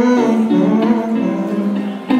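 Guitar playing a slow song, held chords ringing between sung lines.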